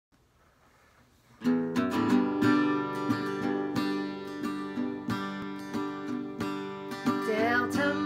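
Near silence for about a second and a half, then an acoustic guitar strummed in a steady rhythm as a song intro. A harmonica held in a neck rack comes in with wavering held notes near the end.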